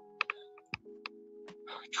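Quiet background music of steady held tones, with about five faint, sharp clicks scattered through it.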